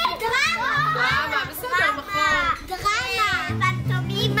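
A group of young children calling out all at once, several high voices overlapping. Background music with a steady low line comes in near the end.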